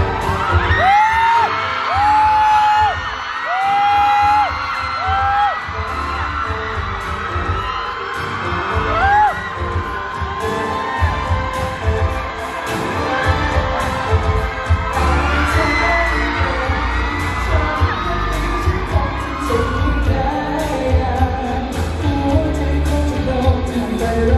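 Live pop song over a PA with a steady beat and band backing, a few long held sung notes in the first few seconds and melodic lines running on through the rest.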